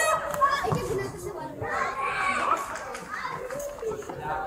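Children's voices calling and shouting during play, several voices overlapping.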